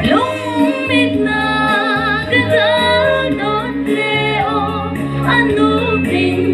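A woman singing a song into a microphone, her held notes wavering with vibrato, over instrumental accompaniment with a steady bass line.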